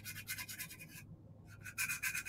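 Quick, even scratching strokes of close-up hand work on a small craft piece. They break off for about half a second midway, then resume. A faint low electrical hum runs underneath.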